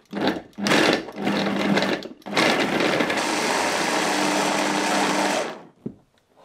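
Small electric food-processor chopper cutting up a whole sliced lemon. After a brief pulse the motor runs in two spells with a short break between them, the second about three seconds long and steady, then stops near the end.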